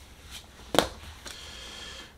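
A tarot card being drawn and laid down on a cloth: a sharp snap about a second in, with a fainter tap before it, then a faint rustle as it settles.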